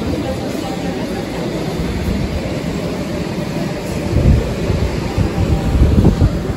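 Large-store ambience: a steady hum and murmur of ventilation and distant shoppers. Over the last two seconds, low rumbling buffets hit the microphone.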